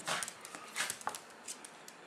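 A small dog snuffling and moving about on a wooden floor, in irregular short bursts with light high clicks and one brief high note about a second in.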